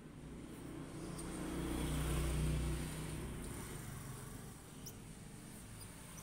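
A motor vehicle's engine goes by, its low hum swelling to a peak about two and a half seconds in and then fading.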